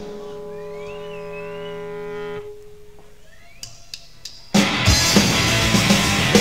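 Live punk rock band starting a song: a held electric guitar chord rings with a wavering high tone over it and dies away, then after a short gap the full band with drums comes in loudly about four and a half seconds in.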